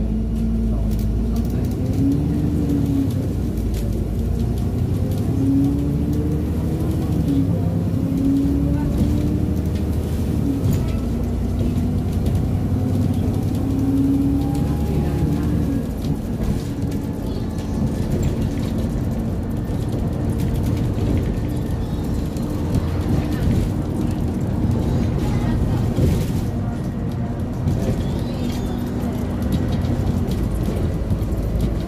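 Alexander Dennis Enviro400 diesel bus heard from inside the passenger saloon while on the move: the engine and automatic transmission drone rises in pitch and steps through gear changes for the first half, then runs steadily, with constant road and tyre rumble.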